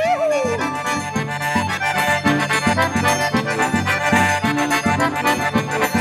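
Forró music led by an accordion playing full sustained chords over a steady, evenly repeating bass beat.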